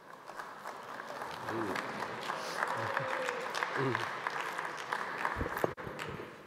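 Audience applauding, with a voice faintly heard over the clapping. Near the end, a few low thumps from the lectern microphones being handled.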